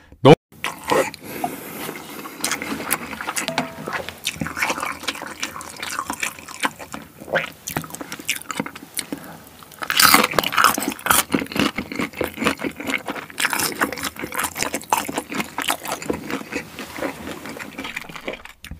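Close-miked chewing and wet mouth smacking, with many irregular short clicks, louder in stretches about ten seconds in and again a few seconds later.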